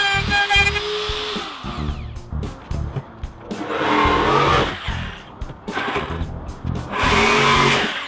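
Background music with a steady beat over the Bosch POF 500A router running under load, its motor pitch wavering, then winding down about one and a half seconds in. Two louder bursts of noise follow later.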